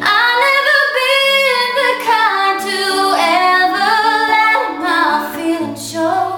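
A woman singing a slow ballad melody in long, held-out phrases over ringing acoustic guitar chords, the voice much louder than the guitar.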